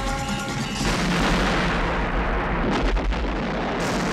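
Music with held tones is cut off about a second in by a sudden explosion. A long blast follows with heavy low end, slowly fading, with a few sharp cracks about three seconds in and again near the end.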